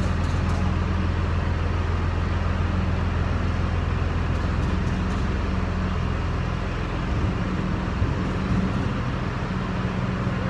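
Running machinery: a steady low engine-like drone with a deep hum, which turns rougher and less even about seven seconds in.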